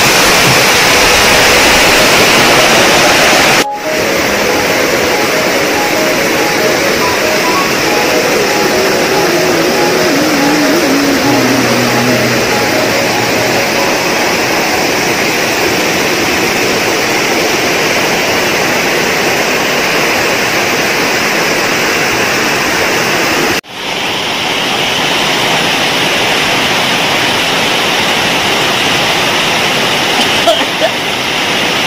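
Loud, steady rush of a waterfall crashing into a pool close to the microphone. It breaks off sharply twice, about four seconds in and again near 24 seconds, where the recording cuts.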